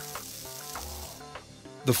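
Hiss of a water extinguisher's spray hitting smouldering wood, stopping about a second in, over soft background music.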